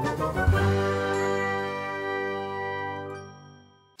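Short musical intro sting: a bright, chiming chord of many notes that rings on and fades away near the end.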